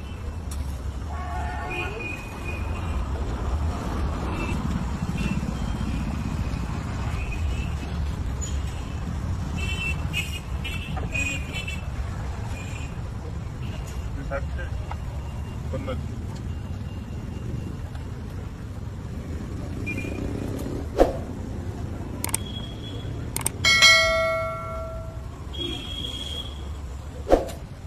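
Busy street ambience: a steady rumble of traffic with scattered voices, a couple of sharp knocks late on, and a vehicle horn sounding briefly near the end.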